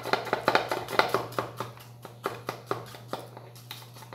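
Rapid clicking taps of a plastic funnel worked in the neck of a plastic bottle to shake loose clogged baking soda, about seven a second at first, then slower and sparser.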